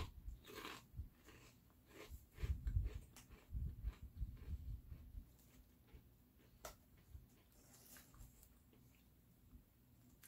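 A mouthful of thin, crisp Cheez-It Snap'd cheese crackers being chewed: irregular, soft crunches that thin out over the first half, then only a few faint clicks.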